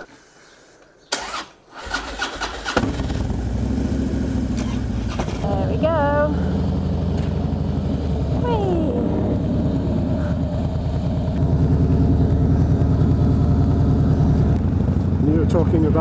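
Harley-Davidson V-twin motorcycle engine being started: a few clicks, then it catches about two seconds in and settles into a steady idle with an even, lumpy beat. The sound gets louder about eleven seconds in.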